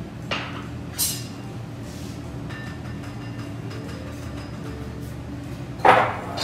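A handheld sieve of powdered sugar knocked against a white mixing bowl a few times, the loudest knock near the end as it is set down on the bowl. Faint steady background music runs underneath.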